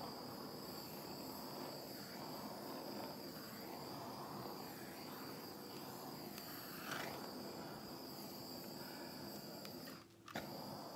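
Small handheld torch hissing steadily as its flame is passed over wet poured acrylic paint, popping surface bubbles and bringing up cells. The hiss stops near the end.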